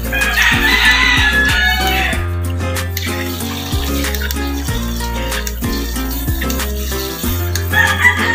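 Background music with a steady bass beat, over which a rooster crows, about two seconds long, just after the start, and crows again near the end.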